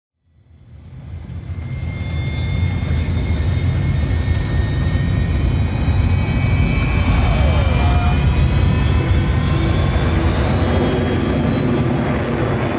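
Jet fighter engine rumble fading in from silence over the first couple of seconds, then holding loud and steady, with thin high whines above the deep roar.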